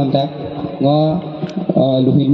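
A man chanting into a microphone, his voice held on long, level notes with short breaks between phrases.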